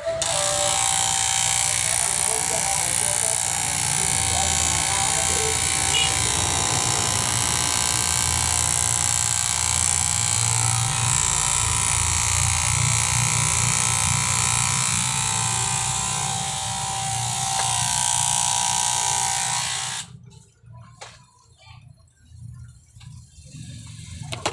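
Electric hair clippers buzzing steadily while trimming hair at the side of the head, switched off suddenly near the end.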